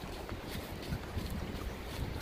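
Wind buffeting the microphone, a steady uneven rumble, with faint scattered ticks over it.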